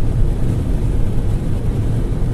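Steady cabin noise inside an MG5 electric estate car driving at speed: a low rumble of tyres on the road, with a fainter hiss of wind above it.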